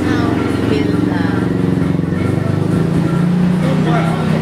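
A woman talking, with background music beneath her voice.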